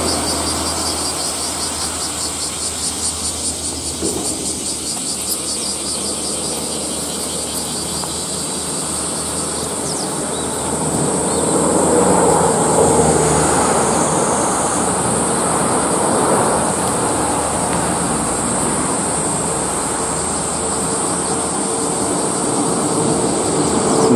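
Steady high-pitched insect chorus, pulsing rapidly during the first few seconds, over a continuous low rumble of outdoor noise.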